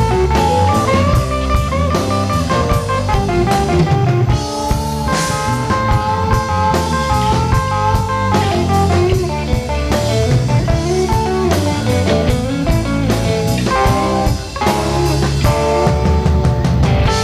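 Live blues-rock band playing an instrumental passage: electric guitars over drum kit, with a lead line of held notes that bend up and down.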